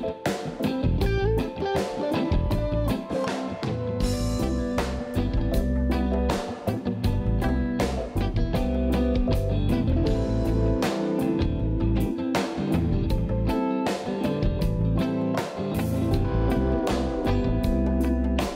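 Live reggae band jamming on a new track: electric guitar over a drum kit with a steady beat and strong low bass notes.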